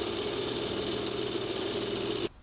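Overlocker (serger) running steadily at speed, stitching and trimming the raw edge of a cashmere coat's seam allowance.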